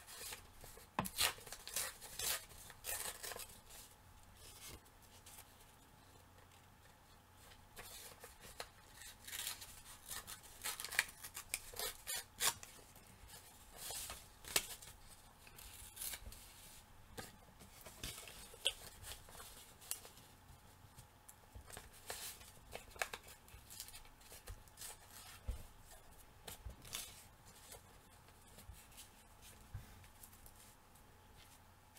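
Paper being torn and handled by hand: irregular short rips and crackly rustles, on and off.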